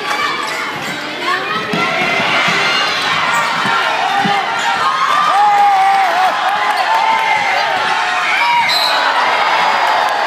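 Basketball dribbled on a gym floor during play, under a crowd talking and shouting; the crowd gets louder about a second in.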